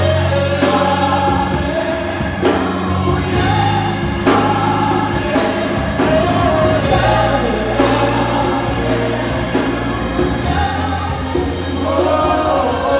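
Live gospel praise singing: a man leads into a handheld microphone with women's voices backing him, over sustained instrumental accompaniment with low notes that change every second or two.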